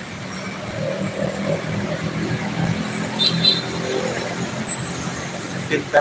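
Road traffic in a slow jam: a steady low drone of idling and creeping car and bus engines under a wash of traffic noise, with a brief high squeak about three seconds in.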